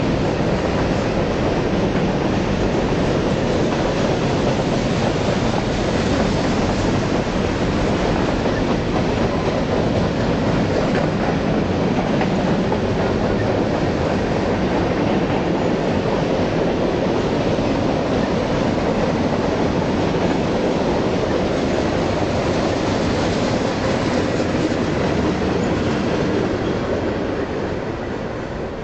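Mixed freight train rolling past on the track: continuous, steady noise of wheels on rail that eases off slightly near the end.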